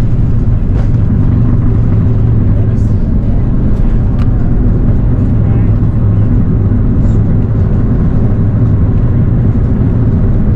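Cabin noise of an Airbus A330-900neo's Rolls-Royce Trent 7000 engines at takeoff thrust during the takeoff roll: a loud, steady low rumble, with the nose lifting as the aircraft rotates near the end.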